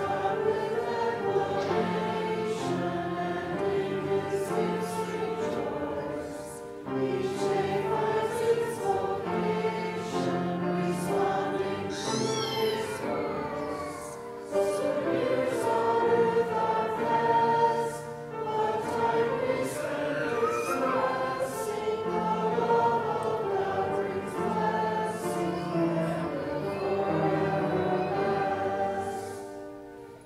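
Congregation singing a hymn in long held phrases, with short pauses between them.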